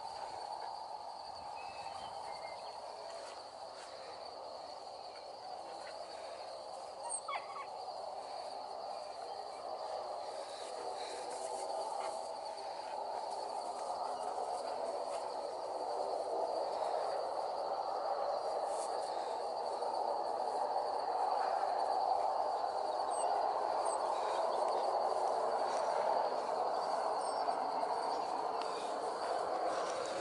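A dense, continuous chorus of many birds calling at once, slowly growing louder, with a steady high insect trill above it. A brief louder sound about seven seconds in.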